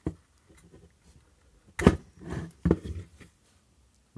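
Small clicks and knocks from handling a plastic work-light enclosure and its circuit board while a small wire-to-board plug is pulled from the board. There is a sharp click a little under two seconds in and another softer click shortly after.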